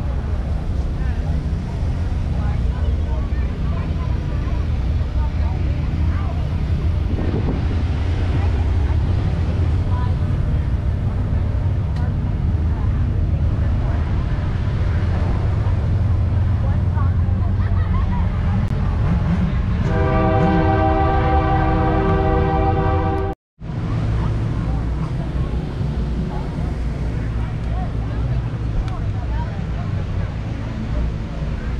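Steady low outdoor rumble with background crowd chatter; about two-thirds of the way through, a horn sounds one steady chord for about three and a half seconds, cut off by a sudden brief dropout of the sound.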